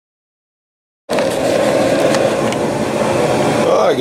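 Water running steadily into a home-made hot tank and churning up foam in the Purple Power degreaser solution, a rushing sound that starts abruptly about a second in.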